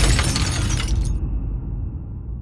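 Glass shattering as a stage light crashes onto the floor, shards scattering over a deep low rumble. The bright high part cuts off abruptly about a second in, leaving only the rumble.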